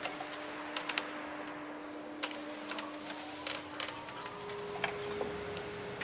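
Pipe organ with a cone-valve windchest sounding one soft, steady note, then a slightly higher note about four seconds in. Scattered sharp clicks and knocks run alongside.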